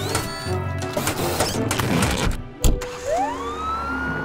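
Cartoon sound effects over a music score: a run of quick clatters and knocks, then a loud thump about two and a half seconds in. After the thump a police-car siren winds up and holds its wail.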